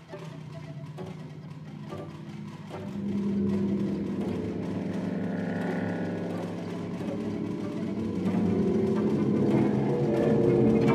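Contemporary chamber ensemble playing sustained, layered pitched chords that swell louder about three seconds in and again near the end, with a few light percussive clicks before the first swell.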